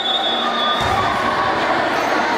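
A referee's whistle blown in one long steady blast that ends about a second in, over the steady noise of spectators. There is a dull thud about a second in.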